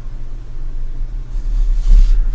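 A steady low rumble and hum with no speech, with a slight swell of faint handling noise near the end as the plastic miniature is set down on the wooden desk.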